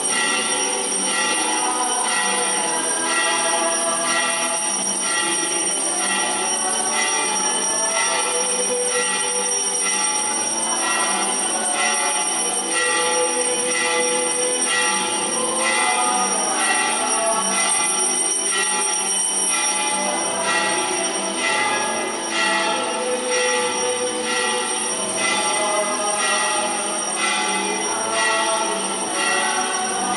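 Church music with a steady beat of about two strokes a second and held notes, playing as the entrance hymn for the opening procession of Mass.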